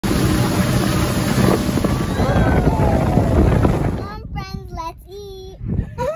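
Wind buffeting the microphone over the rush of water and a motorboat towing an inflatable tube across a lake. About four seconds in, the noise drops away and a high child's voice takes over.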